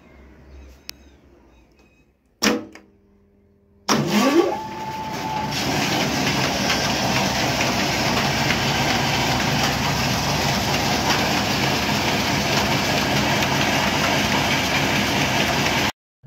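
Belt-driven 24-inch atta chakki (flour mill) on a 10 HP electric motor being switched on: after a brief burst about two seconds in, the motor starts near four seconds with a whine rising quickly in pitch. The mill then runs up to speed with a loud, steady whirr.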